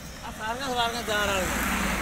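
A road vehicle passing by on the road, its noise swelling to a peak near the end, with a person's voice talking over it.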